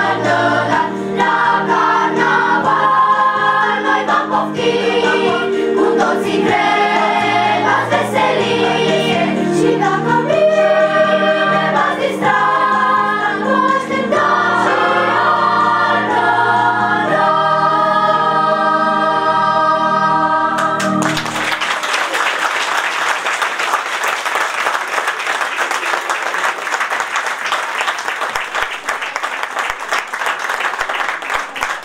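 Children's choir singing a song, which ends about two-thirds of the way through and gives way to audience applause.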